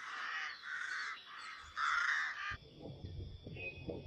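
Harsh, repeated bird calls, about four in a row, which stop suddenly about two and a half seconds in. A low rumble of outdoor noise follows.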